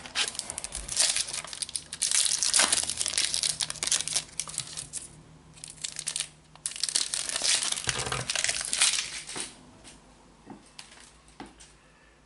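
Foil wrapper of a Panini Adrenalyn XL trading card pack being crinkled and torn open by hand, in two long bouts of crackling, then fainter rustles as the cards are slid out near the end.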